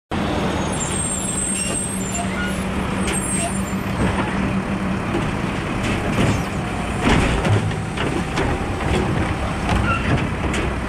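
Automated side-loader garbage truck at the curb, its diesel engine running steadily. From about six seconds in there are knocks and clatter as its hydraulic arm grabs a plastic polybin, tips it into the hopper and sets it back down.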